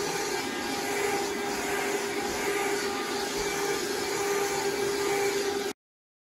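Vacuum cleaner running steadily over a rug and floor, a constant whooshing noise with a steady hum through it; it stops suddenly near the end.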